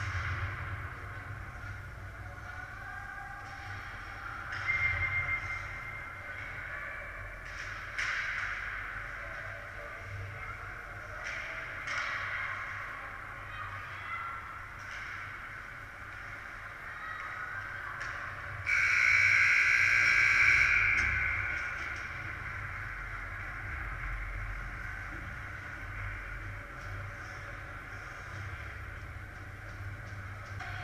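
Youth ice hockey play in an echoing indoor rink: skates scraping and sticks and puck clicking on the ice. About two-thirds of the way through, a shrill whistle blows loudly for about two seconds, stopping play.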